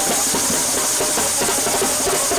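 Indian wedding brass band (band baaja) playing for a baraat: a fast, steady drumbeat under held brass notes.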